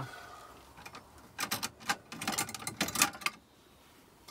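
A quick run of light clicks and knocks, about ten in two seconds, starting about a second and a half in: crockery plates and a cupboard being handled as plates are fetched out.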